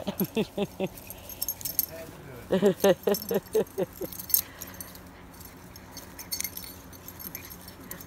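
Two small dogs play-wrestling in grass, with a steady scatter of light metallic jingling from their collar tags, broken by bursts of a woman's laughter.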